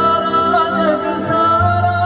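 Live band music: a male singer holds a long wavering note over keyboard and bass accompaniment.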